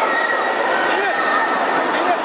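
Loud, steady crowd din: many voices calling and shouting at once, with a few drawn-out high calls.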